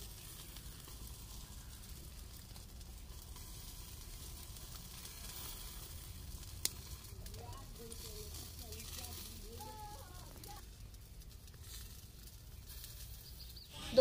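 Faint, steady sizzle of arbi-leaf rolls frying in a little oil in an iron kadhai, muffled under a clay lid while they steam-cook through, with one sharp click about halfway through.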